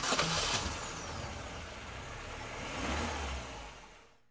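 A recorded car engine sound effect, running and revving, with a brief low swell about three seconds in before it fades out.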